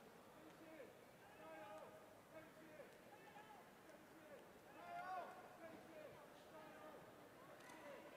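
Faint, indistinct voices of people talking in a large hall, one voice a little louder about five seconds in, with a few faint clicks.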